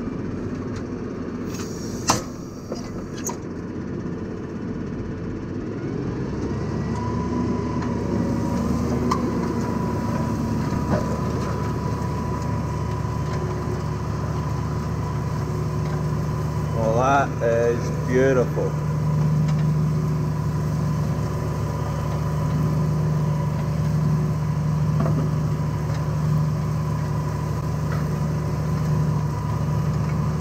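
Tractor engine running, heard from inside the cab, with a sharp knock about two seconds in. About six seconds in the engine settles into a steadier, fuller note as it takes the load of a mounted reversible plough turning furrows.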